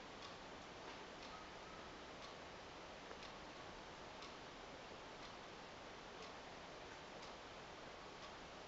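A clock ticking faintly, about once a second, over quiet room tone.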